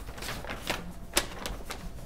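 Irregular clicks of typing on a computer keyboard, several sharp keystrokes at uneven spacing.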